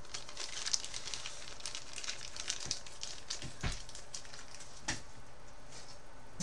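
Faint crackling made of many small light ticks as small objects are handled at a workbench, with two sharper knocks, one a little past halfway and one near the end.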